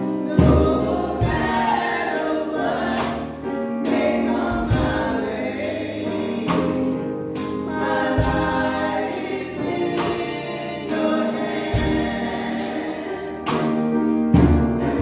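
A small group of women singing a gospel song, with instrumental accompaniment and a beat under the voices.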